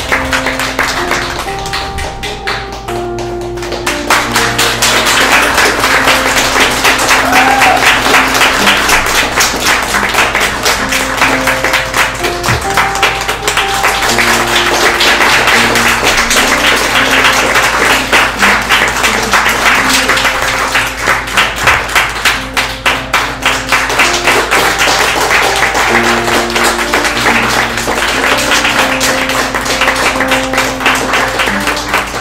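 Upbeat music with a stepping melody, played over continuous audience applause. The clapping thickens and grows louder about four seconds in.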